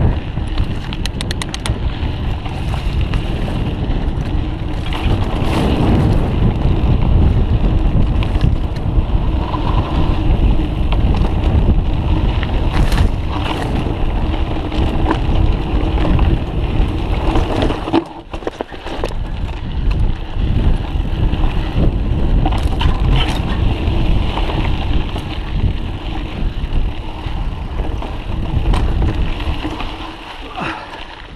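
Mountain bike descending a rough dirt trail: steady wind noise on the microphone, tyre noise and irregular rattles and knocks from the bike over the bumps. It drops briefly quieter about two-thirds of the way through.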